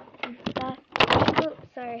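A girl's voice and a loud rustling burst of camera handling noise about a second in, then "Sorry."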